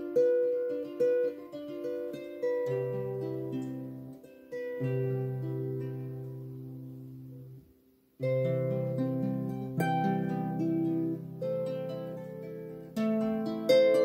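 Celtic harp being played: plucked notes that ring and fade over low bass notes, a melody in a medley of tunes. The playing stops completely for about half a second a little past the middle, then resumes.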